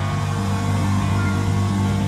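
Live band holding a final chord: steady sustained low notes with a noisy wash above them, following a loud hit just before.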